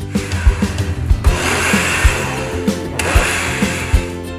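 Countertop blender running for about two seconds, blending milk and fruit into a coffee shake, then switched off abruptly, over background music with a steady beat.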